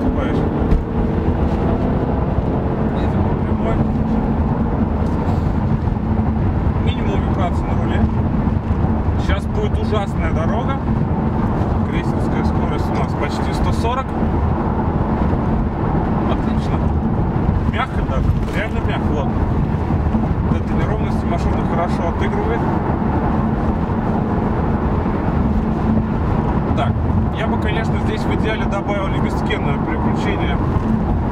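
Infiniti Q50 driving at speed, heard inside the cabin: a steady low engine drone with tyre and road noise.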